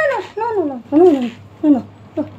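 Domestic cat in labour crying out while straining to deliver a kitten: about four short meows in quick succession, each rising and then falling in pitch.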